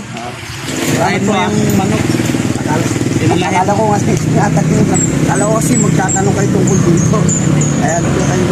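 A motorcycle engine comes in about a second in and runs steadily at idle.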